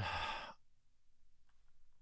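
A man's breathy sigh lasting about half a second, then quiet with a couple of faint ticks.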